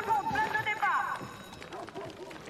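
A high-pitched voice cries out wordlessly for about a second. Then come the quick, scattered footsteps of many people running over a dirt square.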